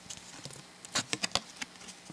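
Trading cards being handled and flipped over by hand: a quick run of light clicks and card-edge snaps about a second in.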